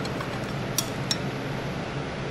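Two light clinks of a metal spatula against a glass measuring cup of liquid soft plastic, about a second in, over a steady low background hum.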